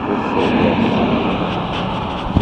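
Steady motor-vehicle noise, an even rushing drone that holds level throughout.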